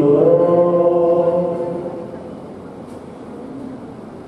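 A man chanting into a microphone, holding a long drawn-out line that fades out about halfway through, leaving low room noise until the end.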